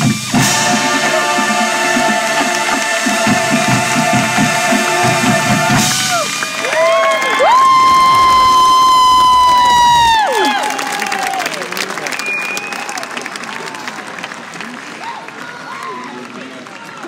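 Drum and bugle corps brass and percussion playing loud held chords over drum patterns. About seven seconds in, the horns scoop up into a final loud sustained chord and fall off it about three seconds later. Crowd applause and cheering follow and fade.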